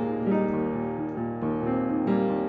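Solo piano being played: a flowing melody over sustained chords, with new notes struck every half second or so.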